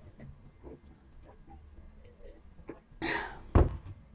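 Faint sips from a coffee mug, then a breath out about three seconds in, followed by a single thump as the mug is set down.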